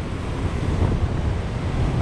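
Wind buffeting the microphone over the steady wash of ocean surf breaking on a sandy beach.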